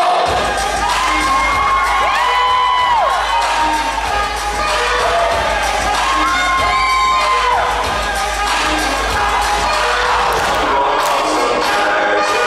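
Audience cheering, with children shrieking in long held cries about a second in and again around six seconds in, over loud dance music played through the hall's sound system.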